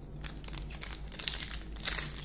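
Foil wrapper of a Bowman Chrome trading card pack crinkling as it is handled and torn open, with denser, louder crackling near the end.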